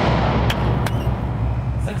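Loud, steady low rumble from the A12 12-meter prototype centrifuge launcher just after its one-meter test vehicle, released at just above Mach 1, has smashed into the target at the end of the tunnel, with two sharp cracks about half a second and just under a second in.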